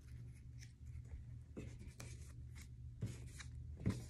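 Faint rustling and light taps of cut paper pieces being picked up and moved on a plastic-covered table, with a few sharper ticks near the middle and end, over a steady low hum.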